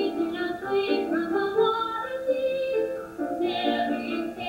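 A stage musical number: a woman singing held, changing notes over instrumental accompaniment.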